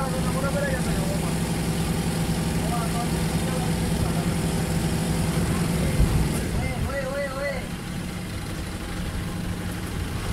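Water bus's engine running with a steady low drone. About six seconds in there is a short thump, and after it the engine note is weaker and lower in level.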